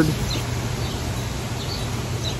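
A few faint, short bird chirps over steady outdoor background noise.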